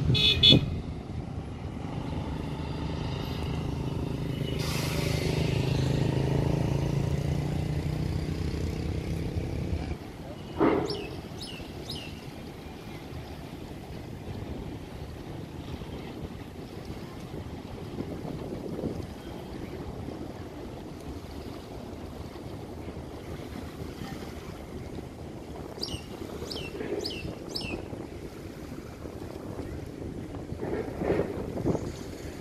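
Outdoor traffic ambience. A short horn toot comes right at the start, and a passing vehicle's engine swells and fades over the first ten seconds. A sharp sound follows about ten seconds in, then quieter open-air ambience with a few short high chirps.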